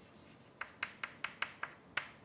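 Chalk writing on a blackboard: a quick run of about six short, sharp taps and strokes, starting about half a second in.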